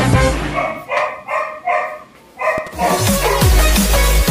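A dog barking about five times in quick succession, short high barks, between two pieces of music: one fades out in the first second, and electronic music with a beat and falling bass starts about three seconds in.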